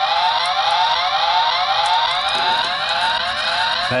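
Electronic police-siren sound effect in a rapid yelp: short rising whoops repeating about three times a second, starting abruptly and stopping near the end.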